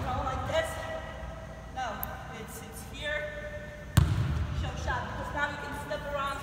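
A basketball bouncing hard once on a hardwood gym floor about four seconds in, amid repeated short, high squeaks of sneakers pivoting on the court.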